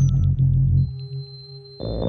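Blippoo Box and Benjozeit synthesizers patched together, putting out a low, buzzing, stepping drone. It drops away about halfway through, leaving a thin high tone, and comes back loud near the end.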